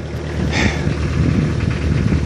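Mazda RF two-litre four-cylinder diesel in a 1985 Ford Escort idling steadily. It is running smoothly on its first start after sitting for three years.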